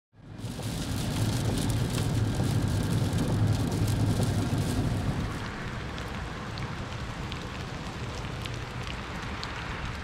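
Steady rain falling on a flooded road, with sharp ticks of drops landing close by. A low rumble fills the first half and eases off about five seconds in.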